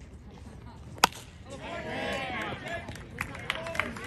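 A baseball bat cracks once against a pitched ball, sharp and loud, about a second in. From about half a second later, spectators shout and cheer.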